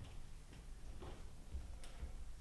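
Faint footsteps on a studio floor: a few light, irregular taps as people walk across the room.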